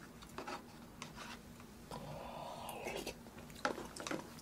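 A person chewing food quietly, with scattered soft mouth clicks.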